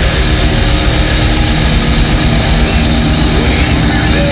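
Loud live heavy metal music: heavily distorted electric guitars and bass, dense and steady, holding droning tones.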